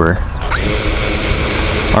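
Xdynamics Evolve quadcopter's motors arming and spinning its propellers at idle. The steady whirring hiss starts abruptly about half a second in with a brief rising whine.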